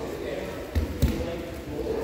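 Two dull thuds on the grappling mats about a third of a second apart, a little under a second in: bodies and feet landing on foam mats during sparring, over background voices in a large echoing hall.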